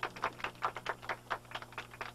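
A rapid, uneven series of clicks, about six a second, over a faint steady low hum.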